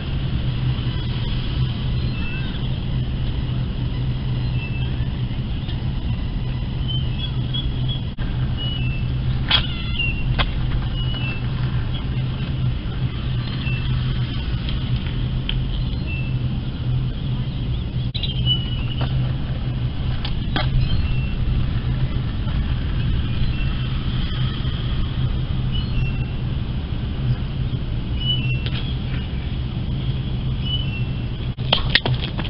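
Steady low rumble of road traffic, with short high chirps and a few sharp clicks around ten seconds in and again around nineteen to twenty-one seconds.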